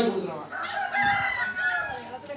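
A rooster crowing once, a drawn-out call that starts about half a second in and lasts a little over a second.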